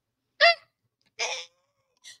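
A woman's two short vocal exclamations: a brief high-pitched "ah" about half a second in, then a breathier "eh" a moment later.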